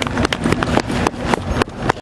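A small audience clapping: an uneven run of sharp, separate claps, several a second.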